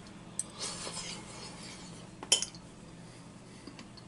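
Metal fork clinking and scraping against a ceramic bowl of pasta soup, a few light clicks with one sharper clink a little over two seconds in.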